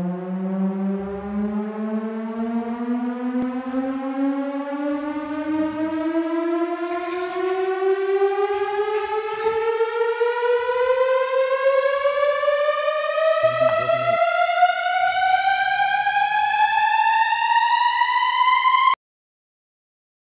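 A siren-like tone climbing steadily in pitch for about nineteen seconds, then cutting off suddenly.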